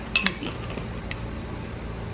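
Metal spoon clinking against a ceramic bowl while scooping food: a quick double clink about a quarter second in, then one faint clink a little past the middle.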